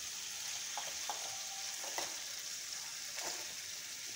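Pieces of fish sizzling steadily in hot oil in a pan, with a few light taps and scrapes of a spatula as they are stirred and turned.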